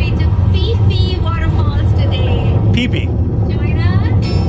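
Steady low rumble of a car driving along a road, under a woman's voice.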